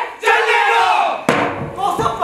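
Several young performers shouting a loud chant together, with one sharp impact a little past halfway through.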